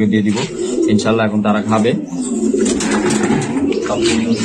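Domestic pigeons cooing in a loft. Near the end, a plastic cup scoops and sloshes water in a plastic bucket.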